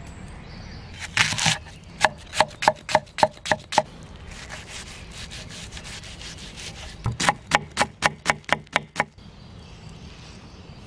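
Chef's knife chopping an onion on a bamboo cutting board, dicing it fine. A short scrape about a second in, then two runs of quick knife strikes on the wood, about four or five a second, with a pause of a few seconds between them.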